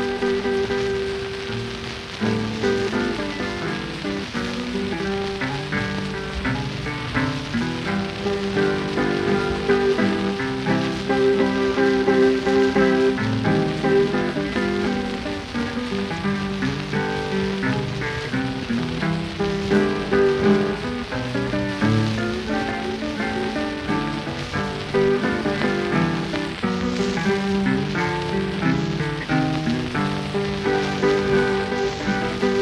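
Instrumental acoustic guitar playing of a late-1920s blues 78rpm record, a quick run of plucked notes and chords ahead of the vocal, played back with heavy surface crackle and hiss from the shellac disc.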